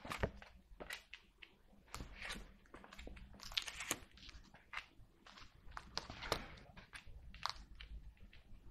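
Tarot cards being handled and laid down on a table: faint, irregular light taps and brief swishes of card on card and on the tabletop.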